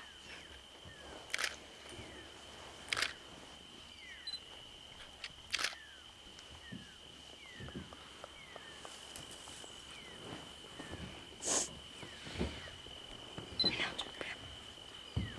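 A steady, high insect trill, with faint falling chirps about once a second, broken by four sharp cracks, the loudest about three-quarters of the way in.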